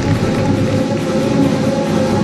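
Instrumental program music for a pairs free skate, playing over the rink's sound system, with held notes.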